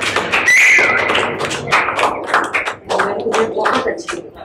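A small group clapping, with a loud, steady whistle about half a second in that dips at the end. Voices are mixed in.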